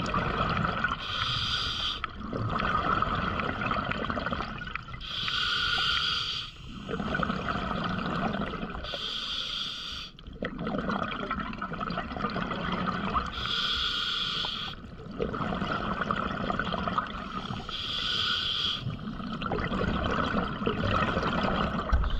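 A diver breathing through an open-circuit scuba regulator underwater: five breaths about four seconds apart, each a short hissing inhale followed by a longer gurgle of exhaled bubbles.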